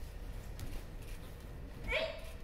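A short kiai shout from a martial-arts practitioner near the end, rising in pitch, over quiet hall room tone.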